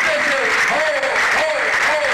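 Audience applauding, with voices shouting over the clapping in short repeated calls about twice a second.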